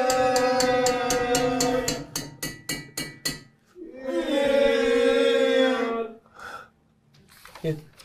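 A voice holding a long sung note, then a quick run of sharp hits, about five a second, then a second long held note.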